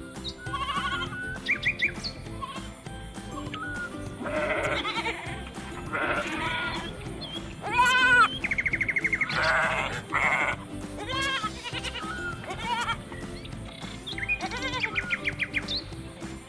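Sheep bleating several times, with the loudest, most quavering calls about halfway through, over background music with long held notes.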